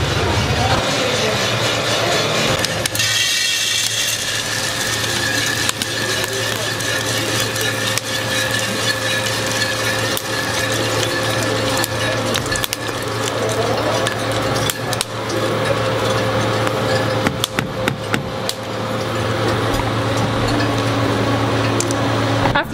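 Small electric drum coffee roaster running with a steady hum, with scattered clicks of coffee beans moving in the machine and its cooling tray.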